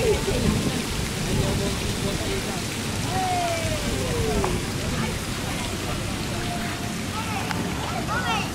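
Water from a fountain feature splashing steadily into an ornamental pond, a continuous hiss of falling water, with faint voices around it.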